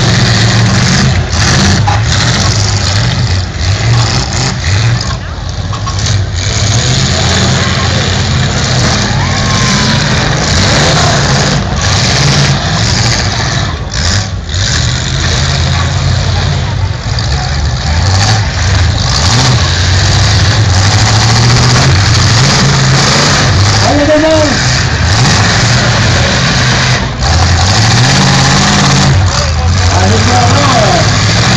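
Demolition derby cars' engines running and revving hard as they manoeuvre and ram each other, their pitch stepping up and down, over crowd voices.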